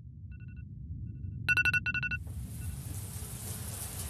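Electronic alarm beeping in quick bursts of four, faint at first, with one loud burst about a second and a half in, over a low rumble. About two seconds in, a shower starts running with a steady hiss.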